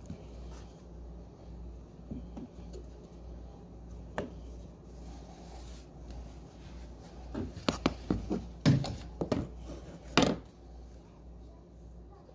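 Wooden baseboard trim being pulled away from the wall and moved onto the floor: a quick run of knocks and clatters over about three seconds, the two loudest near the end, over a steady low hum.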